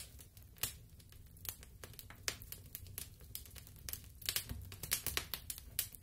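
Irregular clicks, taps and rustles of card and cellophane being handled, as the backdrop of a cardboard model theatre is swapped for a cellophane flame scene.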